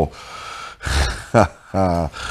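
A man laughing breathily: a run of noisy breaths, then short voiced bursts near the end.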